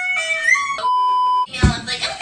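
A flat, steady electronic beep tone, like a censor bleep, lasting about half a second in the middle. It cuts in after a stretch of sing-song voice and music, and a dull thump and voice follow near the end.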